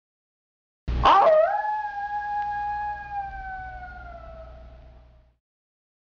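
Station intro sound effect: a sudden hit about a second in, then one long held tone over a low rumble that rises at first, slowly sinks in pitch and fades out about five seconds in.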